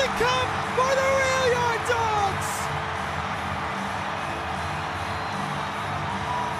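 Hockey arena crowd cheering a championship-winning overtime goal, with music playing over the arena sound system. A voice shouts in long, drawn-out calls for the first two seconds, then the cheering and music carry on without it.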